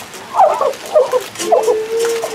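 An animal's excited whining cries, several short warbling ones, then one long held whine near the end.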